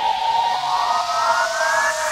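Synthesizer pitch sweeps in an electronic dance mix: one tone rises while another falls, over a steady held note and a climbing rush of noise, the siren-like build-up of a riser.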